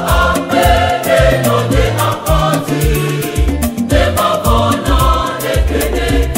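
Ewe gospel song: a choir singing over a bass line and a steady drum beat.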